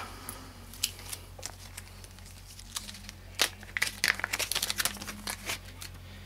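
Handling noise from pistol parts and a small punch tool being moved and set down on a rubber work mat: scattered light clicks and knocks, with a quick run of clicks in the second half.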